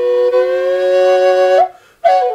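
Swamp kauri double-chambered drone flute in F# minor: the left chamber holds a steady F# drone while the right chamber plays a melody note that slides slowly upward. Both stop together for a breath near the end.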